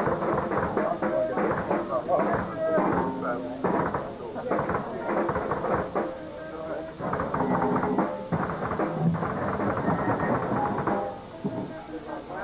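People talking in a small club between songs, mixed with scattered electric guitar notes and knocks from the stage as the band gets ready to play.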